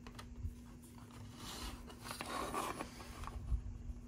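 Plastic model car body and its separate top being handled and turned in the fingers: faint, irregular rubbing and scraping of plastic with a few light clicks, busiest around the middle.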